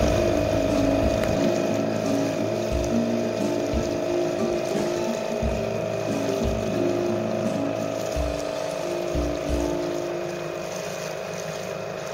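Sailing yacht's inboard diesel engine running steadily under way, a constant drone with a held whine, over the wash of water and wind on the microphone.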